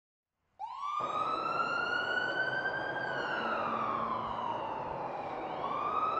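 Emergency vehicle siren wailing over a steady hiss. It starts about half a second in, climbs and holds high, slowly falls, then climbs again near the end.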